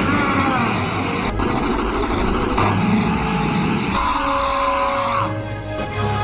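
Film soundtrack: music over the rushing noise of an aerosol spray can lit into a flamethrower, with some high gliding whines. The rushing stops near the end.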